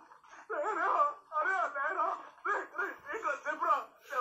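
Film soundtrack dialogue: a voice crying out in distress, pleading and sobbing, with a high, wavering pitch in short broken phrases.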